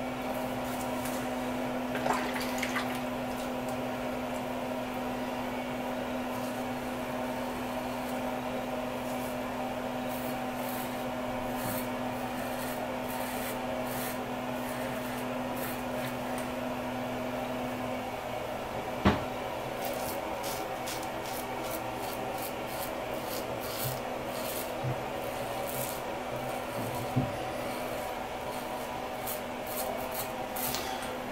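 Merkur Futur double-edge safety razor with a Zorrik stainless blade scraping through lathered beard stubble in short rasping strokes, which come thicker in the second half. A steady background hum runs underneath and stops a little past halfway, and one sharp click follows soon after.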